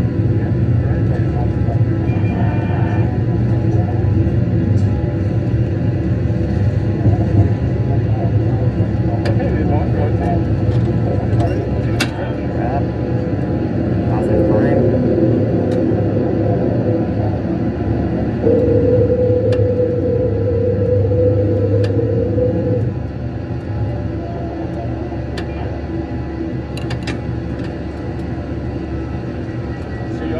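Airliner flight simulator's cockpit sound: a steady low rumble of simulated jet engines and airflow. A steady tone sounds for about four seconds past the middle, and light clicks come and go.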